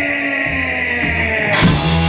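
Live rock band playing: electric guitars hold a ringing chord, with bass notes coming in about half a second in and a drum and cymbal hit near the end.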